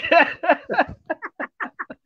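A man's voice finishing a phrase, then a run of short, quick laughs, about six or seven in a second, fading away.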